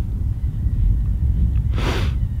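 Wind buffeting the microphone, a steady low rumble, with a short breath from the speaker near the end.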